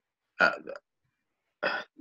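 A man's short, hesitant "uh" grunt, followed about a second later by another brief vocal sound.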